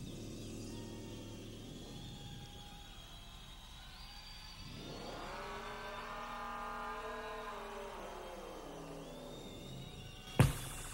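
Quiet electronic stage sound effect in a pause between songs. About five seconds in, a stack of tones sweeps upward together, holds, and slides back down near the end.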